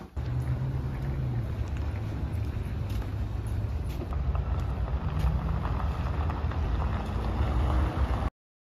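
Steady low rumble of outdoor street noise, like nearby traffic, starting abruptly just after the start.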